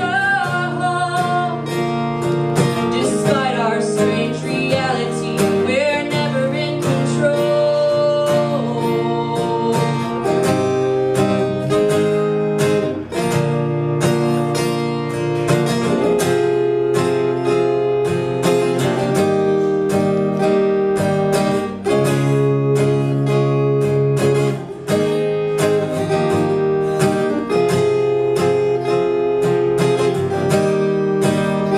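Live acoustic guitar strummed steadily, with a woman singing over it. Her voice is heard mainly in the first several seconds, and the guitar carries on alone after that.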